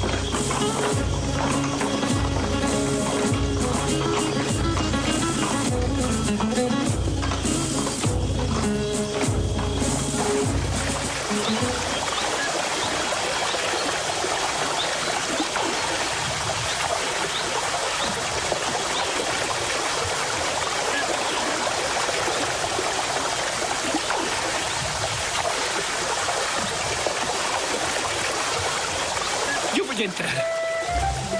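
Background music with a steady low drum beat, about one pulse a second, for the first twelve seconds or so. Then a steady rush of flowing stream water.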